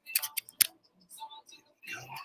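Handling noise from the recording device as it is reached over and adjusted: several sharp clicks and rubs in the first half-second, then fainter rustling.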